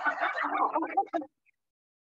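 Aircraft passengers laughing together. The sound cuts off abruptly about a second in, leaving dead silence.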